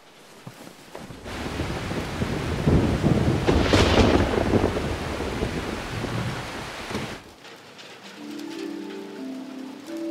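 Heavy rain with a rolling rumble of thunder that swells to its loudest about three to four seconds in and dies away about seven seconds in. Soft held music notes come in near the end.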